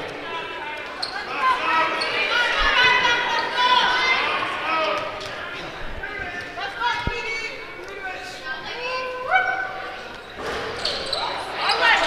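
Echoing gymnasium sounds during a basketball free throw: high voices calling and shouting from players and spectators, with a basketball bouncing on the hardwood court and one sharp knock about seven seconds in.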